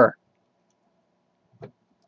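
Quiet room with a faint steady hum and one short click about one and a half seconds in.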